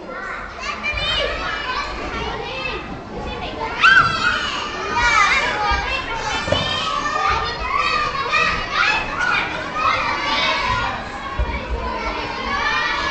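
A group of young children shouting, squealing and chattering at once, many high voices overlapping, with one loud shriek about four seconds in.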